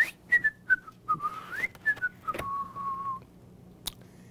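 A man whistling a short made-up tune by mouth: a run of short notes with a quick upward slide, then one long held note that stops a little past the three-second mark.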